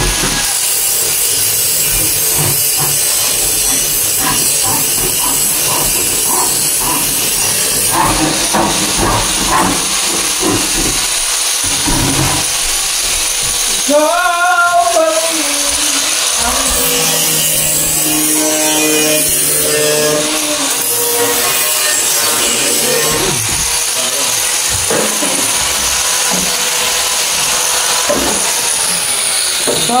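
A handsaw cutting through plywood with repeated strokes in the first seconds, then indistinct voices and music.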